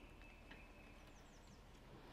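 Near silence, with a faint distant bird: a thin held whistle, then about four quick high falling chirps a little past the middle.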